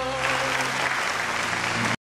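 Studio audience applauding as the last held sung note of the song fades out about half a second in; the sound cuts off abruptly near the end.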